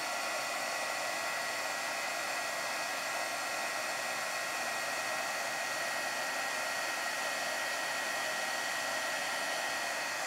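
Handheld embossing heat tool blowing steadily, a fan hiss with a high whine, melting white heat embossing powder on black cardstock.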